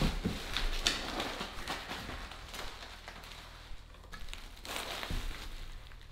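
Packing materials rustling and crackling in a cardboard box, plastic bubble wrap and foam packing peanuts, as a bubble-wrapped bundle is lifted out. The rustling comes in irregular bursts.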